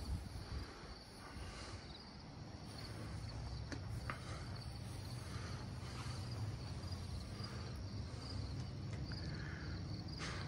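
Crickets chirping faintly and steadily over a low rumble, with a single faint click about four seconds in.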